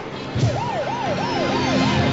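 Emergency vehicle siren in a fast up-and-down yelp, about four sweeps a second, coming in about half a second in over a music bed.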